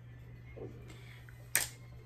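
A steady low hum with one sharp click about one and a half seconds in, as makeup is handled on the table.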